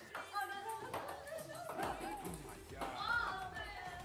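Quiet voices talking over faint background music.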